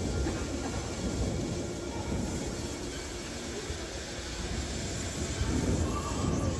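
Steady low rumble of background noise in a gymnastics hall, with no distinct knocks or voices standing out.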